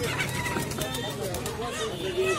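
Caged domestic pigeons cooing amid the background chatter of a crowded bird market.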